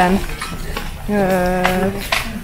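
A woman's voice holding one long, steady hesitation vowel ('ööö') for nearly a second in the second half, after a quieter stretch with a few faint clicks.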